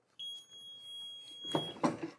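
Fusion IQ heat press timer sounding one long, steady, high-pitched electronic beep of about a second and a half, signalling that the press cycle is complete.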